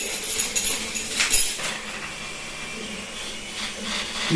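Small plastic toy helicopter on the floor with its battery nearly flat, its little motor still whirring and the rotor clattering and ticking against the uneven landing spot, with a few sharp clicks in the first second and a half before it settles to a steadier whir.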